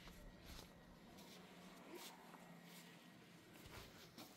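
Near silence: faint background hiss with a few weak ticks.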